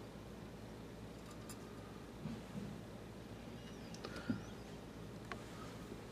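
Quiet room tone with a faint steady hum, broken by a few soft, short clicks and handling sounds, the most noticeable a little after four seconds.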